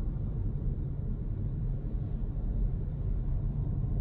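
Steady low road and tyre rumble heard inside the cabin of a Hyundai Kona Electric on the move, with no engine sound.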